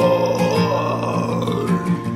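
Karaoke singing: a single voice holds one long note, bending slightly in pitch, over a backing track of strummed acoustic guitar.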